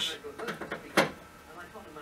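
A single sharp click about a second in, over faint room noise.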